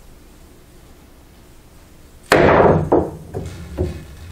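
Pool massé shot: the cue is struck steeply down on the cue ball with one sharp, loud knock about two and a third seconds in. A few lighter knocks follow as the ball runs off the rails.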